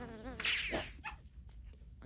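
A brief high, wavering whine: a person imitating a dog's whimper. It is over in about a second.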